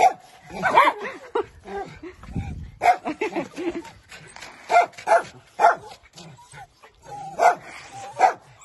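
Several dogs barking and yipping in short, irregular barks, some coming in quick pairs about five seconds in and again near the end.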